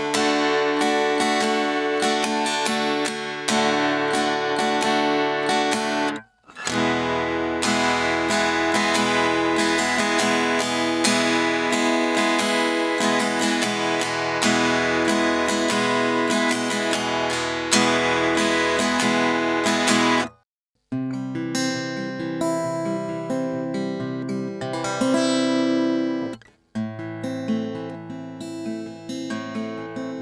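Tribute TRI-7SCE steel-string acoustic-electric guitar strummed in chords, heard direct from its jack pickup with no processing. The playing drops out briefly three times: about six seconds in, about twenty seconds in, and near the end.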